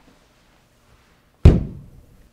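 One heavy thud against a wall about a second and a half in, a person knocking into it, with a short low boom that dies away quickly.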